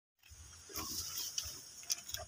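A goat feeding on a pile of cut leafy branches: leaves rustling and crunching as it eats, with a few short sharp clicks near the end over a low rumble.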